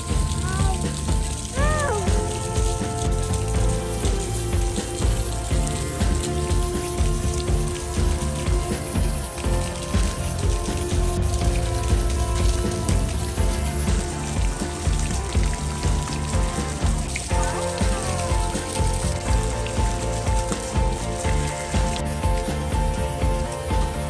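Fountain jet splashing steadily into its stone basin, a constant patter of falling water, with background music over it.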